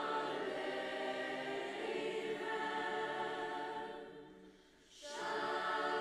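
A large choir of young voices singing long held chords. The singing fades away about four seconds in, pauses briefly, and comes back in strongly about a second later.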